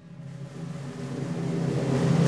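Orchestral music opening a zarzuela piece: low sustained notes swelling steadily louder in a crescendo.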